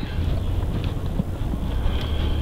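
Car driving slowly over rough pavement, heard from inside the cabin as a steady low rumble with a few faint ticks.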